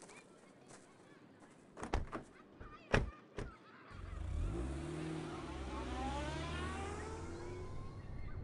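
A few knocks, the loudest about three seconds in, then a futuristic vehicle sound effect starts: a steady low hum with a rising whine as the vehicle pulls away and gathers speed.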